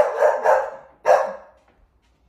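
Bull terrier barking: a few short, loud barks in the first second and a half.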